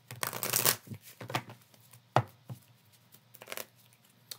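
A deck of tarot cards being shuffled by hand: a rustling run of cards sliding through the hands in the first second, then a few short flicks and clicks, with one sharp click a little after two seconds in.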